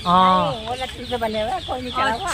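A person's voice, with drawn-out, bending tones and no words made out; loudest in the first half second.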